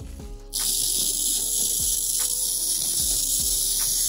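Lawn sprinkler heads of an irrigation zone hissing loudly as compressed air blows out the lines during winterization. The hiss starts suddenly about half a second in and holds steady, over quieter background music with a beat.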